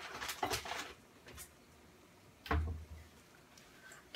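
Rummaging in a kitchen cabinet: a quick run of small clicks and rustles, then a single louder knock about two and a half seconds in.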